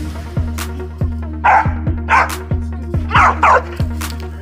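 A dog barking four times, in two pairs about a second apart, over background music with a heavy pulsing bass beat.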